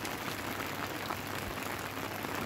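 Steady patter of rain, an even hiss with scattered small drop ticks.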